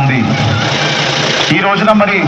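A man's voice amplified through a public-address system with horn loudspeakers, speaking Telugu over a dense, noisy din. The voice breaks off for about a second in the middle, where the din carries on alone.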